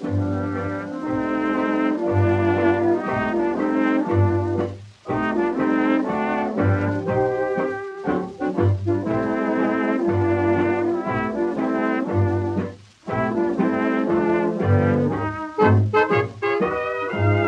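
Instrumental break of an early-1930s dance-orchestra record, with brass carrying the melody over bass notes that fall about every second and a third. The music drops briefly twice, about five seconds in and near thirteen seconds, between phrases.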